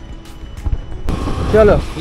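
Wind and road noise from a Suzuki Burgman 125 scooter riding at about 28 km/h. It cuts in suddenly about a second in, over a low rumble.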